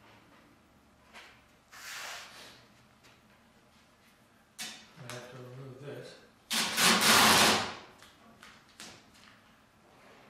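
Adhesive tape pulled off a roll: a short rip about two seconds in, then a louder, longer rip of about a second near seven seconds, the loudest sound here.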